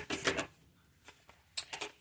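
A deck of tarot cards being shuffled by hand: quick papery card clicks and flicks in the first half second, a pause, then more just before the end.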